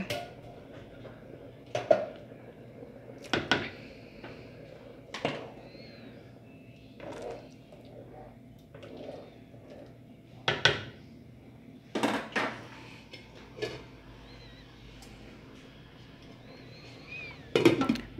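A spoon knocking and scraping against a speckled enamel cooking pot a handful of times while corn kernels are stirred into green rice cooking in liquid.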